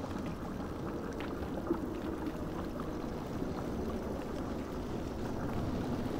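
Steady low watery rumble of underwater ambience, with a faint click just under two seconds in.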